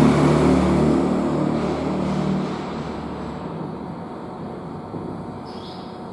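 Low engine hum of a passing motor vehicle, loud at first and fading away over the first two to three seconds, leaving a quieter steady background hum.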